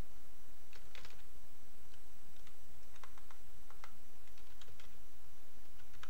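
Computer keyboard being typed on: a string of short, irregularly spaced keystrokes entering a short word.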